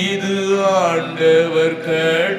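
A man singing a Tamil worship song into a microphone, holding long notes that slide up and down in pitch.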